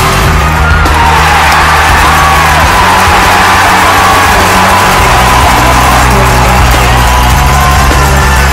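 Loud music with a heavy bass line that steps between held notes, under a wavering lead melody.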